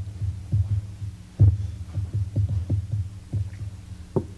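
Footsteps of several people walking across the floor: irregular low thuds, a few a second, the heaviest about a second and a half in. A steady electrical hum runs underneath.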